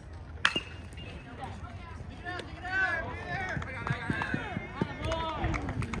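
A metal baseball bat hitting a pitched ball once, about half a second in, with a sharp ping that rings briefly. Spectators and players then shout and cheer as the ball is put in play.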